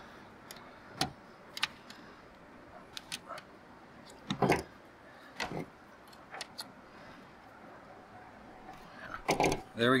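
Pliers bending a cotter pin over on an antenna mast mount: scattered small metal clicks and clinks, with a louder knock about four and a half seconds in.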